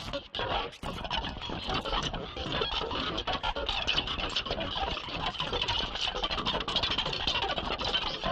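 Electronic music from a heavily modulated Mimic sampler synth in Reason: a dense, choppy texture of rapid clicks and noisy chatter that runs without a break, with brief dips in level just after the start.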